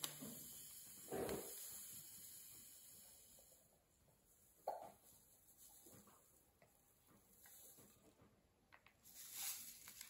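Near silence, with a few faint short sounds of a plastic scoop and plastic bag as powder is scooped into a plastic mould. One brief, slightly louder blip comes about five seconds in.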